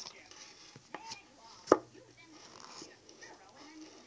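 A sharp click about a second in, then a louder single sharp knock a little before the middle, over faint scuffing.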